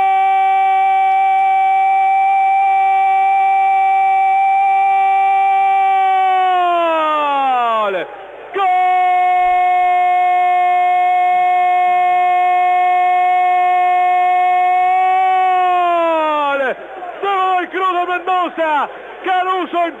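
Argentine radio football commentator's long goal cry: "gol" held on one loud, steady high note for about eight seconds that sags and falls away, a quick breath, then a second held note of about the same length that also falls off. Fast commentary resumes near the end.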